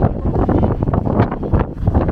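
Wind buffeting the camera microphone: a loud, irregular gusting rumble.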